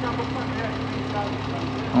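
Dump truck's diesel engine running steadily at idle while its raised bed tips out a load of earth.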